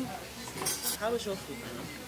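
Cutlery clinking against plates, with a couple of sharp clinks a little under a second in, over background voices.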